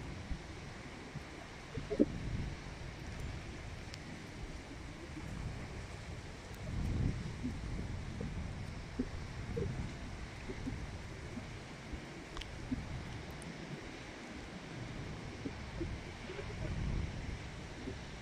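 Gusty storm wind buffeting the microphone in a low rumble that swells and eases, with surf breaking on the beach behind it.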